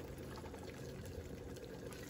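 Wooden spoon stirring thick curry sauce in a pan, a faint, soft liquid sound over a steady low hum.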